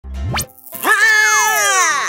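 Cartoon sound effects over music: a quick upward-sliding whoosh, then a loud pitched tone that holds and then glides down as the water-drop character falls.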